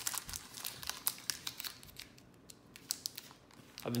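Foil wrapper of a Pokémon TCG booster pack crinkling as it is handled in the hands. Crisp crackles come thick in the first two seconds and thin out after.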